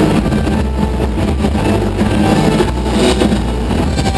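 Live rock band playing loud, with a steady low droning bass under a dense wash of distorted noise.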